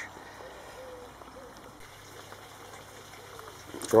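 Faint, steady background noise with no distinct event; a man's voice starts near the end.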